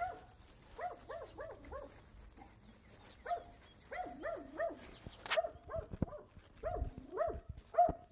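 Small dog barking in short, high yaps, a dozen or so in quick runs of up to four with brief pauses between.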